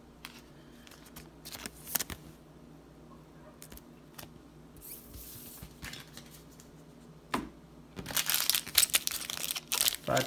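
Foil trading-card booster pack wrappers crinkling as several packs are picked up and handled. This is loud and continuous over the last two seconds, after a mostly quiet stretch with a few scattered clicks.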